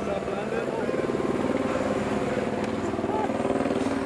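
Helicopter rotor running steadily with a fast, even beat, just after setting down its slung load, with indistinct voices of people nearby.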